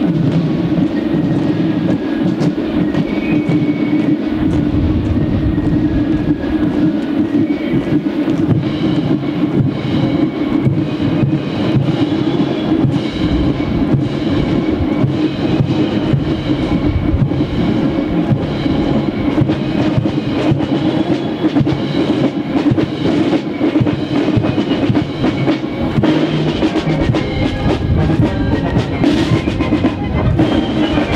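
German military brass band playing a march, with brass and drums sounding steadily throughout.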